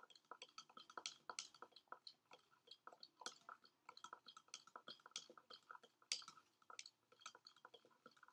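Plastic spoon stirring copper sulfate solution in a plastic beaker: faint, irregular clicking and tapping of the spoon against the beaker, several clicks a second, while table salt dissolves.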